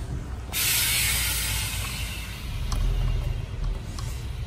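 A steady hiss that starts suddenly about half a second in and holds, over a low rumble.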